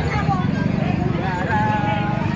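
Crowd chatter, several people talking at once, over a steady low rumble.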